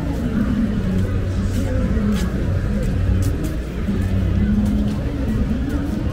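Busy city street at the roadside: traffic passing with a low engine rumble, mixed with the voices of people around and music.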